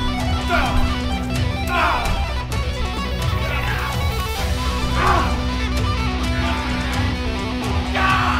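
Electric guitar playing heavy rock music, with several falling slides.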